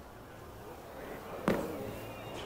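A single sharp knock about one and a half seconds in: a thrown wooden bolo palma ball striking the packed court near the pins, over a low murmur of the hall.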